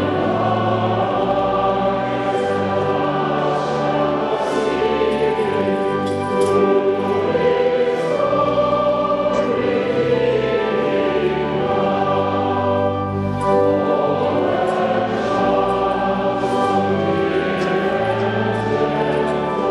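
A church choir singing in harmony, held chords that move from note to note without a break.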